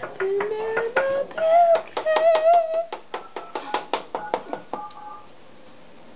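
A woman's voice makes high, wordless sung notes that glide up and then waver, over a run of quick clicks. The voice stops about five seconds in.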